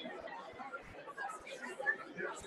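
A roomful of people talking in pairs all at once: an indistinct babble of overlapping conversation with no single voice standing out.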